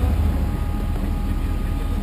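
Off-road buggy's engine running at low, steady speed, a constant low rumble with no revving.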